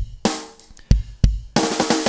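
Rock drum kit loop playing back after mix processing: kick, snare and cymbal hits in a quick, steady beat, with a hit about every third of a second.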